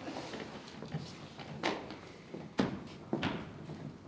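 Slow, heavy footsteps on a stage floor, three distinct steps about a second apart, as an actor imitates an old man's halting walk.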